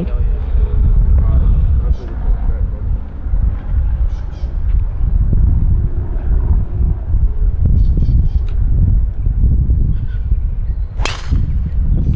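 A golf driver strikes a ball off the tee with a single sharp crack near the end, over a continuous low rumble.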